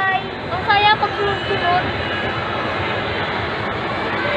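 Steady rushing background noise, with a person's voice briefly heard in the first two seconds.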